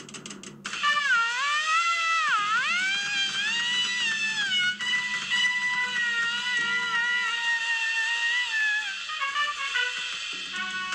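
Jazz track with a trumpet lead: the line bends down in pitch and back up a couple of seconds in, then settles into long held notes over quiet accompaniment.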